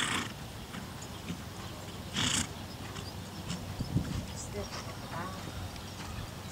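Horse trotting on a sand dressage arena, its hoofbeats soft and muffled, with two short breathy snorts about two seconds apart, one at the start and one a little after two seconds in.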